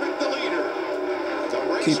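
Pack of NASCAR stock cars' V8 engines droning at race speed, played through a television speaker, with faint broadcast commentary underneath.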